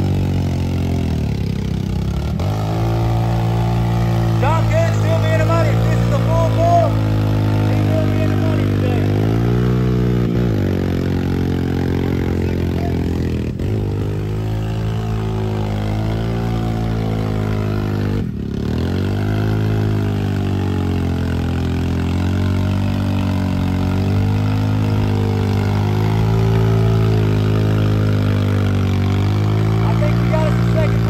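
Engine of a heavily lifted Honda four-wheeler working steadily as it churns through deep mud. The revs rise and fall, and the engine note dips sharply and recovers about four times, as it shifts gears.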